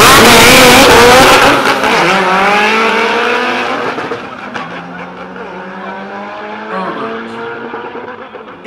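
Drag-race cars accelerating hard off the start line at full throttle and pulling away down the strip. The engine note climbs and drops back at each gear change, very loud at first and fading steadily as the cars get farther off.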